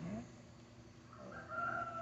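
A rooster crowing faintly in the background: one long, steady call starting about a second in.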